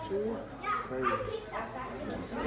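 Background voices: children and other people talking and calling out in the house.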